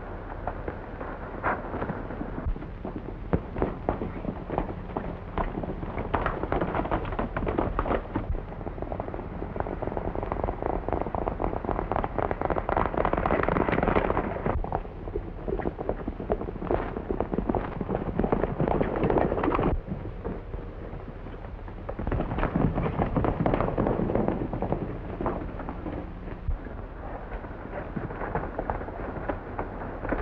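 Several horses galloping: a dense, fast clatter of hoofbeats on a dirt trail that swells and eases, dropping off briefly about two-thirds of the way through before building again.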